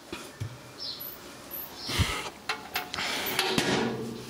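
Handling noises: a dull knock about halfway through, then a run of short clicks and rattles as parts of an antique fridge's interior are handled.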